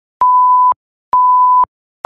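Electronic beep tone repeating at one steady pitch: two beeps of about half a second each, roughly a second apart, each starting and stopping with a click.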